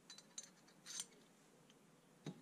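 Faint metallic clicks, then a brief scrape about a second in, as a threaded steel rod is worked through a sheet-metal bracket on a square steel tube, small steel parts knocking against each other.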